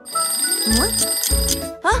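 Cartoon sound effect of a twin-bell alarm clock ringing rapidly, starting suddenly and stopping shortly before the end: the signal that the dessert's freezing time is up.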